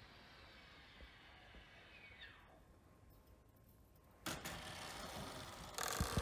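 Mostly near silence. About two seconds in, a faint whine falls quickly in pitch: the Racerstar BR1103B micro brushless motor and its propeller spinning down as the throttle is cut. A faint steady hiss starts suddenly about four seconds in.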